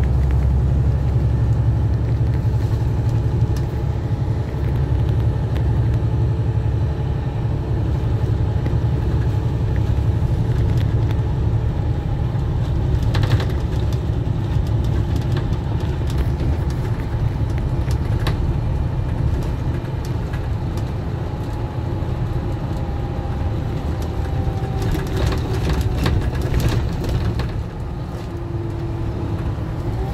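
National Express coach heard from inside the passenger cabin while driving: a steady low engine and road rumble, with a faint whine that slowly rises and falls in pitch later on. A few short rattles sound around the middle and near the end.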